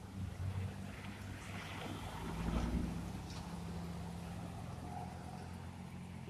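Road traffic: cars driving through a street intersection, a low rumble of engines and tyres that swells as one car passes about two to three seconds in.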